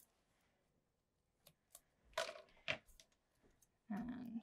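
Faint handling of paper card pieces and a roll of foam tape on a craft mat: a few light clicks, taps and rustles, the strongest a little over two seconds in.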